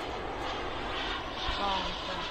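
Gas-turbine engine of a radio-controlled L39 model jet in flight overhead: a steady jet rush.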